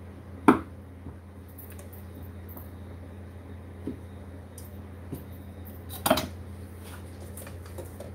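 Kitchen utensils clinking against a stainless steel mixing bowl and work surface: a sharp clink about half a second in, another about six seconds in, and a few faint taps between, over a steady low hum.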